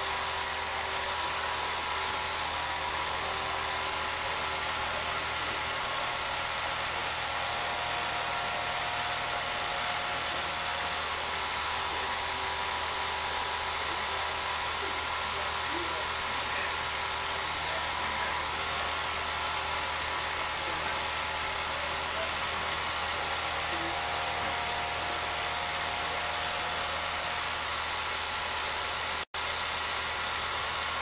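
Home-movie film projector running steadily: an even motor whir with a constant hiss and low hum. The sound cuts out for a split second near the end.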